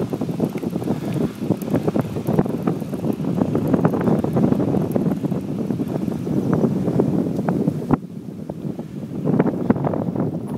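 Wind buffeting the microphone of a camera carried on a moving bicycle: a steady low rumble full of small crackles and knocks. It gets quieter about eight seconds in.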